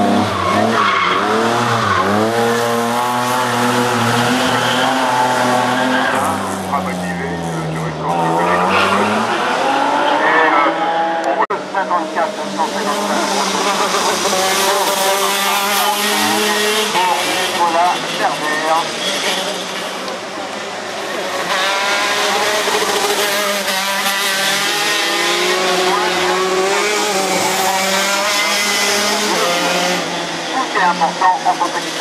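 Hill-climb racing cars at full effort, engines revving hard and changing gear, the pitch climbing and dropping again and again as they brake and accelerate through the bends. Tyres squeal along the way. The engine sound eases briefly after about 20 seconds and then builds again as the next car comes up.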